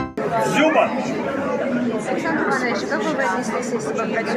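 Indistinct chatter of several people talking at once in a large, echoing hall.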